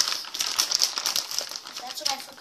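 Close plastic crinkling and rustling with many quick clicks as small plastic toy army soldiers are handled.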